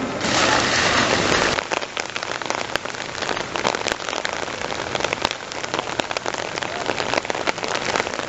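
Rain falling, a dense hiss for about the first second and a half, then changing abruptly to a finer crackle of separate drops pattering.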